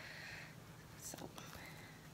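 A soft intake of breath and one softly spoken word over faint room tone, with a few faint ticks about a second in.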